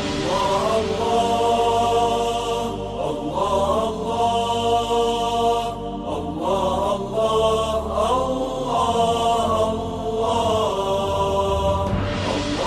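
Chanted vocal music, with long held melodic lines that slide between notes.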